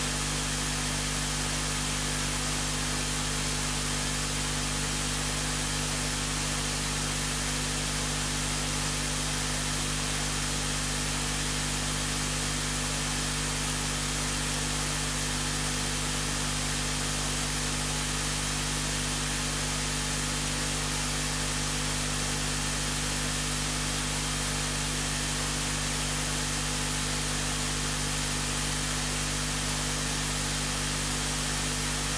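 Steady, unchanging hiss with a constant low electrical hum beneath it, as from a recorder's noise floor or a running air conditioner or fan in the room.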